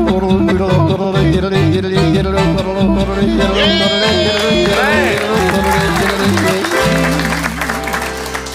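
Live cowboy band playing: accordion, acoustic guitar and upright bass with a steady beat, with high sliding vocal calls in the middle. The music changes to a lower, held passage near the end.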